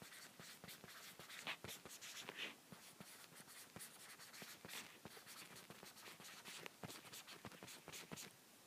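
Faint irregular taps and short scratches of a stylus writing by hand on an iPad's glass screen.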